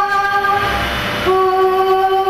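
A woman singing long, steady held notes; about a second in there is a short breathy break, then she holds a slightly lower note.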